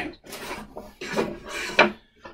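Wooden parts and a sanding drum being set down and slid about on a wooden sander table, with a sharp knock near the end.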